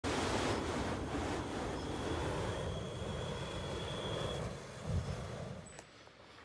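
XM42 Lite handheld flamethrower firing a jet of burning fuel: a steady rushing noise that dies down about four and a half seconds in.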